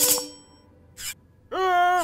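Cartoon sound effect: a bright metallic glint, a "ting" that rings high for about half a second, as sharp spikes on a chair seat sparkle. A short hiss follows about a second in, and a sustained, steady-pitched cry sets in near the end.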